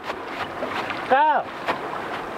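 Steady rushing of river water, with a brief spoken syllable about a second in.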